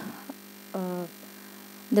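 Steady low electrical mains hum in the recording, heard in a pause in the talking, with a brief vocal hesitation sound about a second in.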